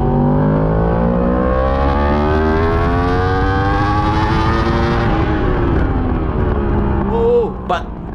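Yamaha R1's inline-four engine heard onboard, its pitch rising steadily as the bike accelerates hard out of a corner and down the straight, then falling as it slows for the next turn, with a rush of wind over it.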